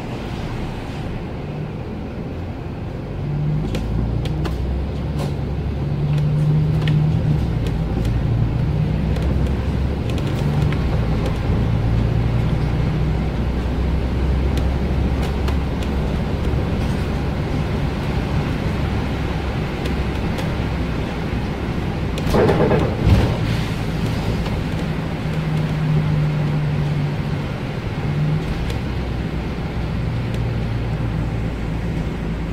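Diesel engine and driveline of a Volvo 7000A articulated city bus running under way, heard from inside the bus, with tyre noise on a wet road. The engine gets louder a few seconds in as the bus gathers speed. A short rush of noise ending in a knock comes about three-quarters of the way through.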